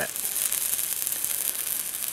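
DC stick-welding arc of a 6010 electrode burning steadily on steel plate: a dense, even crackling sizzle.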